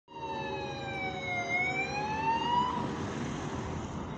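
Siren on a car with a roof light bar: one slow wail that falls and then rises again, cutting off a little under three seconds in, over the noise of passing vehicles.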